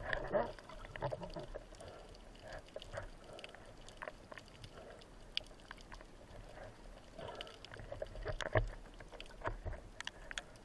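Muffled underwater sound heard through a gun-mounted camera housing as a spearfisher glides through the shallows: water rushing past the housing with scattered small clicks and crackles. There is a louder swell of water noise and a sharp knock about eight and a half seconds in.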